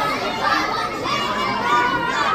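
Many children's voices calling out at once in an audience, overlapping and unclear, answering the presenter's question about what the swinging balls will do.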